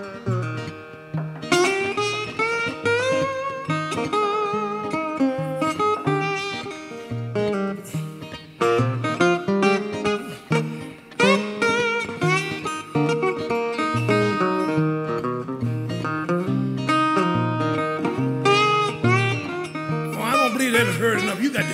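Two acoustic guitars playing an instrumental blues break. A metal-bodied resonator guitar picks lead lines with notes that bend in pitch, over a steady bass pattern of about two notes a second.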